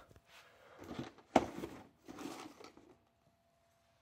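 Cardboard toy box being handled and turned around: rubbing and scraping of cardboard for about three seconds, with one sharp knock about a second and a half in.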